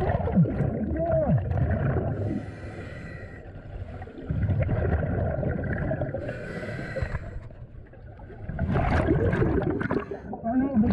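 Scuba regulator breathing heard underwater: rumbling, gurgling exhaled bubbles in three long stretches, each of the two pauses between them filled by a short hiss of inhalation through the regulator. Warbling pitched sounds come through near the start and near the end.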